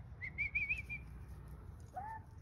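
A faint, high whistle wavering up and down a few times for under a second, over quiet outdoor background.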